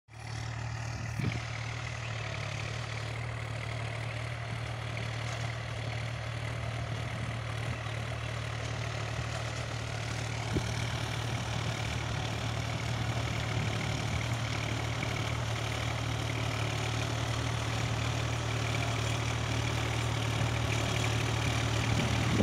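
Farm tractor's diesel engine running steadily under load while it pulls a rotavator through the soil. The sound grows gradually louder as the tractor approaches.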